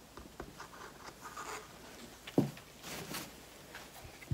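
Light handling noises: a paint cup being set down on the table and gloved hands gripping a canvas, faint rubbing and scraping with one sharp knock about two and a half seconds in.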